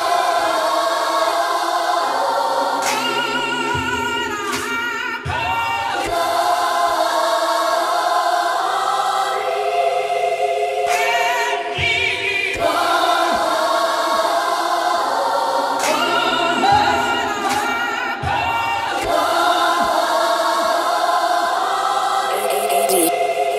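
Hip-hop instrumental stripped down to its sampled choir singing with vibrato, in phrases that break off and restart every few seconds. The drums and bass have dropped out just before.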